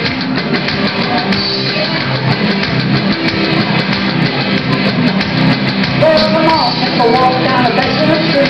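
Live blues-rock band playing electric guitars and a drum kit at a steady, loud level, with a higher melody line of bending notes coming in about six seconds in.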